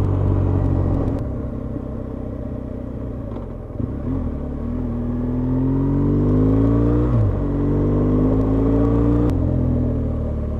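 BMW motorcycle engine heard from the rider's helmet, with wind rush. The engine eases off, then accelerates with a rising pitch, and the pitch drops at gear changes about seven and nine seconds in.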